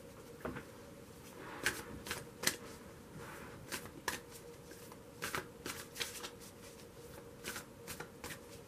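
A tarot card deck being shuffled by hand: soft rustling with short, sharp card snaps scattered irregularly, about one or two a second.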